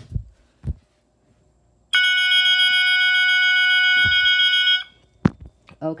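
Two fire alarm horn strobes, set off from a manual pull station, sound a steady, unbroken horn tone in continuous mode. The tone starts about two seconds in, lasts about three seconds and cuts off abruptly. A click comes before it and another just after.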